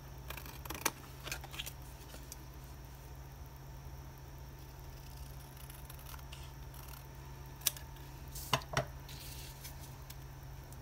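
Scissors snipping through thin card-stock paper in a few short, sharp cuts in the first couple of seconds, then quiet, then a sharp click and two louder knocks close together near the end.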